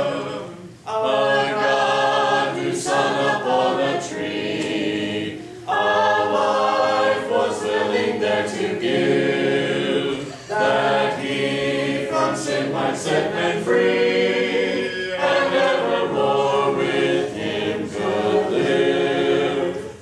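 A church congregation singing a hymn a cappella, many voices unaccompanied by any instrument, led by a song leader. The hymn moves in sung phrases of about five seconds, each separated by a brief breath pause.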